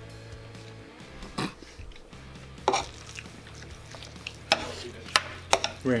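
Soft background music with steady held tones, broken by about five short, sharp clicks and knocks from eating and drinking at the table: a plastic water bottle and a spoon on a curry platter.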